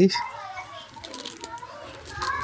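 Faint voices in the background, with soft rustling of a saree's fabric as it is unfolded and spread out.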